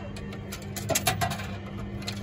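A few short clicks from a kiddie ride's coin mechanism as a coin is worked into the slot about a second in, over a steady low hum, with music faint in the background.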